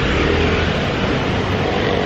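Steady street noise dominated by a motor vehicle's engine running close by, a constant low rumble with a faint hum over it.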